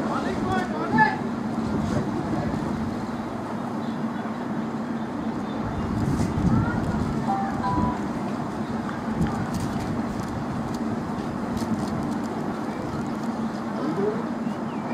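Steady outdoor rumble, like distant traffic or wind on the microphone, with faint far-off voices calling now and then.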